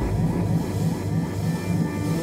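Free-improvised live band music: a dense swarm of quick rising pitch glides over a low sustained drone, with no clear beat.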